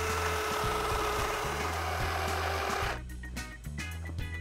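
Sun Joe battery-powered chainsaw cutting down into a log: a steady electric motor whine over the rasp of the chain in the wood, the pitch sagging slightly as the chain bites, then stopping abruptly about three seconds in.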